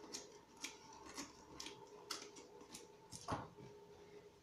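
Scissors snipping through wrapping paper, trimming the excess from around a covered tin can: short sharp cuts about two a second, then a single knock near the end.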